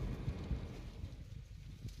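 Low rumble of a car rolling slowly, heard from inside the cabin, easing off about a second in.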